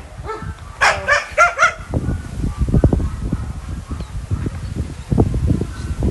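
A dog barks several times in short, high-pitched bursts about a second in, followed by a few seconds of low rumbling noise.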